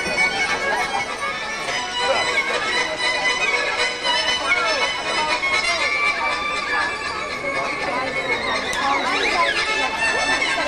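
Live folk music: a violin plays a lively, sliding tune over a steady held drone.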